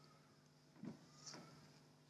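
Near silence: room tone with a faint steady low hum and two faint soft knocks about a second in.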